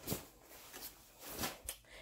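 Faint handling noise as padded fabric bedding is laid in a baby's glider bassinet: soft rustles with a few light taps, one at the start and two about a second and a half in.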